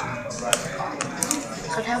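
Several sharp clicks and taps of plastic cutlery against a plastic food container, over background voices talking.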